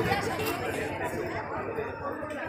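Indistinct chatter of people talking in the background, no single voice clear.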